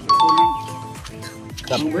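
A two-note ding-dong chime right at the start, a higher note then a lower one, fading within about a second.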